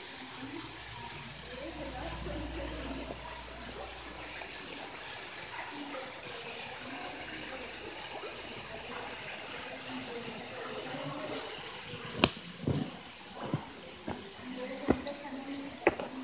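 Koi pond water splashing and running steadily as the fish churn at the surface. In the last few seconds come several sharp knocks from handling the phone.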